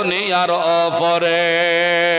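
A man singing a Bengali devotional verse into a microphone; about a second in his voice settles into a long held note with a wavering vibrato.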